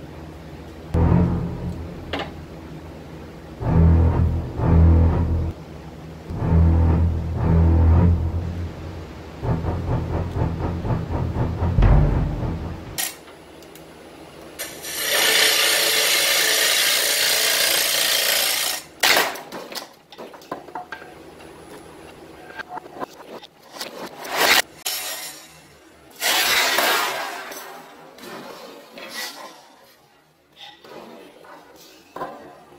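Wood lathe hollowing a dry oak bowl: the hollowing rig's cutter scrapes inside the spinning bowl in repeated bursts, the longest and loudest about halfway through. A few sharp knocks and another rough burst come near the end, under background music.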